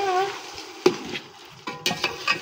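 A metal spoon stirring chicken frying in masala in a metal pot over a wood fire: a steady sizzle with sharp clicks and scrapes of the spoon against the pot, once a little under a second in and again near the end, the later ones loudest. The chicken is being browned in its spices, before the water and rice go in.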